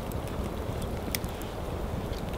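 Campfire burning: a couple of faint sharp crackles over a steady low hiss.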